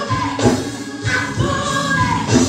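Live gospel singing: a woman's amplified voice holding long notes over accompaniment with a steady beat of about one low stroke a second.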